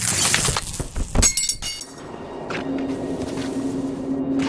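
A rushing crash followed about a second in by a sharp impact with a bright ringing, shattering tail, like breaking glass or struck metal; from about two and a half seconds a low steady drone sets in.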